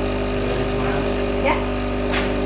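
Espresso machine with a built-in grinder running with a steady, loud mechanical hum while an iced coffee is being made.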